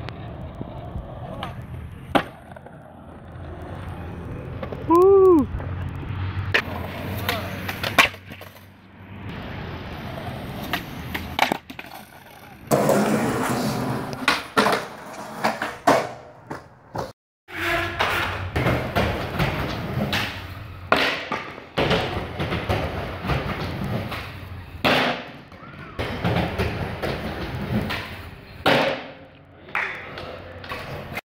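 Skateboards rolling on concrete, with repeated sharp clacks of the boards popping and landing as tricks are tried. The clacks come at irregular intervals throughout.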